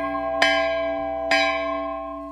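Large hanging temple bell rung by hand with its clapper: two strikes about a second apart, each ringing on and slowly fading.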